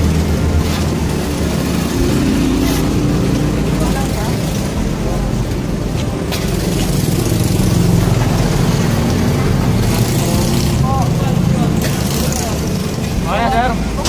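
A motor vehicle's engine running close by amid steady street noise, with indistinct voices in the background.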